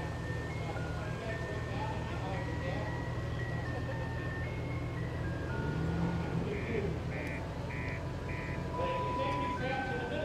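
A simple electronic tune of single high notes, stepping from note to note like an ice-cream-van chime, with four short evenly spaced beeps a little after the middle. Under it runs the steady low rumble of slow-moving Jeep engines.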